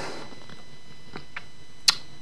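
Quiet room tone broken by a few faint, short clicks and one sharper click near the end.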